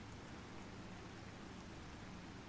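Faint steady hiss, rain-like, with a low hum beneath it.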